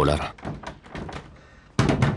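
A line of dubbed dialogue ends, then after a quiet stretch comes a sudden heavy thud near the end.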